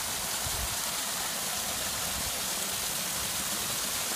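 Small rock waterfall pouring into a garden pond: a steady splashing rush of water.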